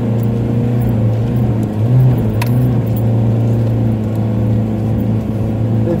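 Nissan Hardbody pickup's engine pulling steadily under load through soft dune sand, heard from inside the cab, with a brief rise in revs about two seconds in and a single sharp click just after. The tyres are not deflated enough for the sand and are starting to dig in.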